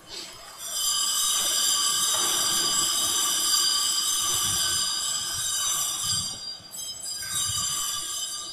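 A bell ringing continuously with a bright, metallic tone of several steady high pitches. It holds for about six seconds, dips briefly, then rings again near the end.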